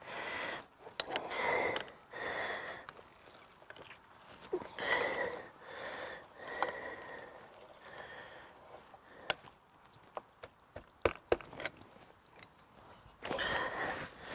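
A bicycle pedal being threaded and tightened into the crank arm: a run of short scraping strokes about once a second, then a few sharp clicks later on.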